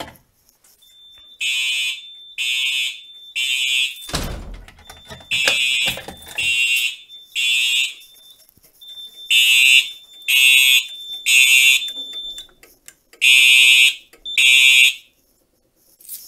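Fire alarm horns on a Simplex 4010 panel sounding in alarm, in the temporal-three evacuation pattern: three short loud blasts, a pause, then three again. A thin steady high tone runs between the blasts, and there is a thump about four seconds in.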